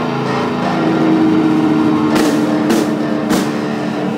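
Punk band playing live: electric guitars holding a chord over a drum kit, with three cymbal crashes in the second half.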